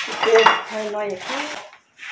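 Metal scraping and clatter as the iron grill top of a wood-fired stove is swept clean with a brush, with some squealing scrape tones.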